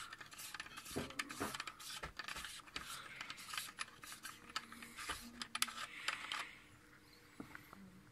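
Metal screw-on cap on the rear port of a Meade ETX-125 telescope being unscrewed by hand: a run of small scratchy clicks and rubs of metal threads and fingers, dying away about six and a half seconds in.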